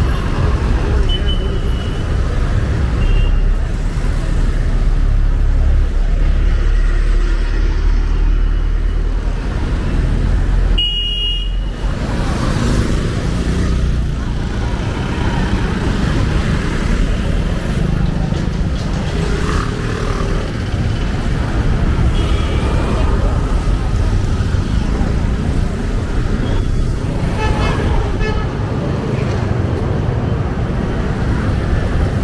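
Busy street traffic: motorcycles and cars passing with a steady engine and tyre rumble, and a few short horn toots.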